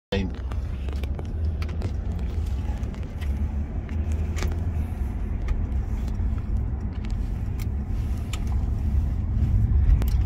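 Car driving, heard from inside the cabin: a steady low road and engine rumble, with a few faint scattered clicks.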